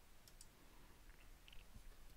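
Near silence with a couple of faint computer mouse clicks, one quickly after the other, about a third of a second in.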